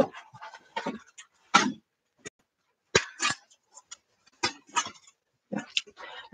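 Brief scattered rustles, scrapes and taps of plastic folder sheets and a cutting mat being handled on a craft table, about half a dozen short bursts at uneven intervals.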